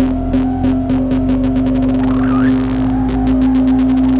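Serge Paperface modular synthesizer playing a steady droning tone over a low rumble, cut through by a quick, regular train of clicking pulses, with a short rising chirp just past the middle.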